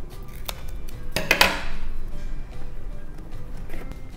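Scissors cutting cardboard, with a cluster of sharp snips about a second in, over quiet background music.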